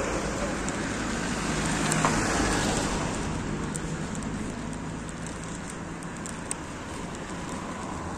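Street traffic noise: a vehicle passing on the road grows loudest about two seconds in, then eases off into a steady lower rumble of traffic.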